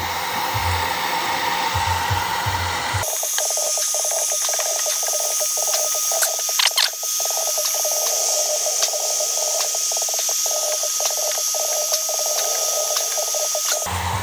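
Electric heat gun blowing steadily while heating a freshly applied plastic-gas-tank patch. About three seconds in, its sound changes abruptly, losing its low rumble and turning thinner and higher.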